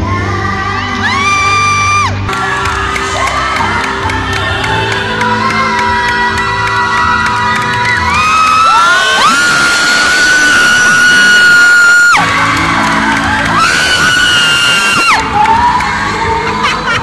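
A child singing into a microphone over a backing track, sliding up into long high held notes, the longest lasting about three seconds in the middle while the accompaniment thins out. The audience whoops and cheers over the held notes.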